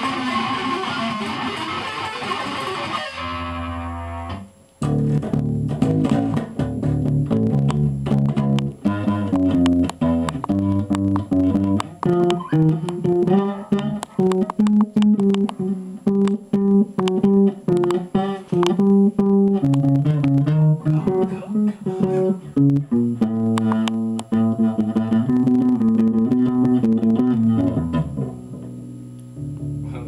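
Electric guitars through amplifiers playing a heavy, fast-picked riff. Low notes change several times a second. There is a short break about four seconds in, and the playing eases off near the end.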